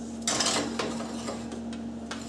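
Metal cupcake tin scraping as it is slid onto a wire oven rack, a short scrape about a quarter-second in followed by a few light clinks, over a steady low hum.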